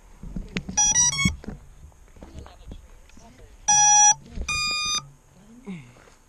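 Startup beeps from a 7-inch FPV quad's brushless motors, driven by its ESC: a quick run of three short tones rising in pitch, then a longer lower beep and a higher one about half a second later. This is the ESC's power-up tune followed by its signal-ready beeps as the quad is readied for flight.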